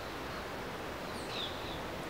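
Steady outdoor background noise, an even hiss, with a faint high falling chirp a little over a second in.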